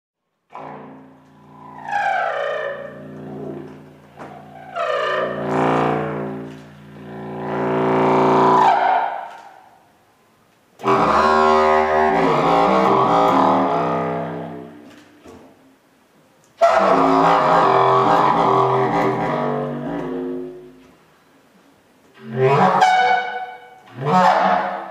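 Contrabass clarinet playing long, low, reedy notes in four phrases, with short pauses for breath between them. The overtones sweep and shift within each held note.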